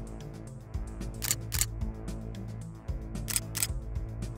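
Background music with a camera-shutter sound effect: pairs of sharp clicks, two clicks a third of a second apart, repeating about every two seconds.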